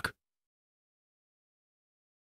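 The tail of a spoken word, cut off a fraction of a second in, then dead silence with no sound at all.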